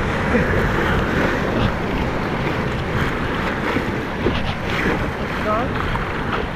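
Rushing whitewater of a river rapid, heard from a kayak running it, with wind buffeting the microphone.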